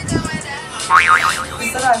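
Background music with a short, wavering 'boing'-style comedy sound effect about a second in. A woman starts talking near the end.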